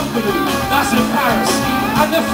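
Live band music with guitar, and a man's voice singing into a microphone over it.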